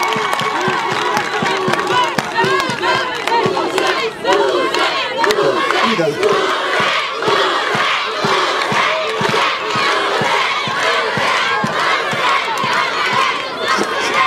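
Large crowd cheering and shouting, many voices at once.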